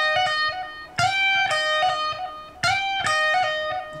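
Les Paul-style electric guitar playing a single-note lick high on the E string: a picked note slid quickly up two frets, then a lower note and a quick hammer-on and pull-off. The phrase repeats, starting again about a second in and once more near three seconds.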